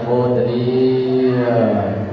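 A Buddhist monk's voice chanting in a slow, drawn-out intonation, holding one long note through most of the stretch before it falls away near the end.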